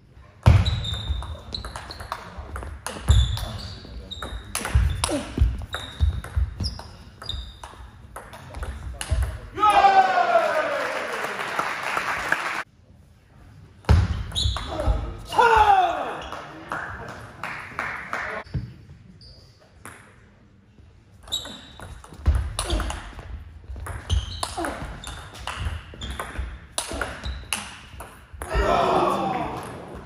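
Table tennis rallies: the plastic ball clicks rapidly back and forth off bats and table, with short high pings. Loud, drawn-out shouts break in, the longest about ten seconds in, with more around fifteen seconds and near the end, as points are won.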